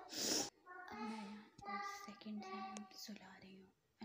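Soft, half-whispered voice: a short breathy hiss at the start, then about two seconds of quiet murmured speech or humming with drawn-out notes.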